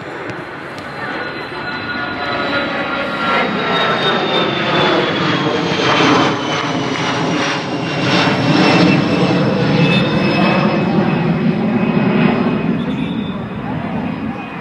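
An aircraft passing low overhead: its engine noise swells to a peak past the middle, with whining tones that fall slowly in pitch as it goes by, then begins to fade near the end.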